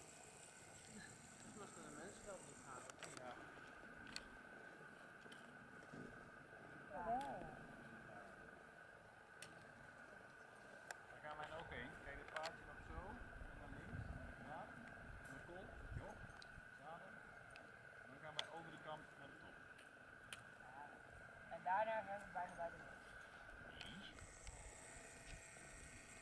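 Quiet, indistinct voices of people talking in brief snatches, over a faint steady high tone.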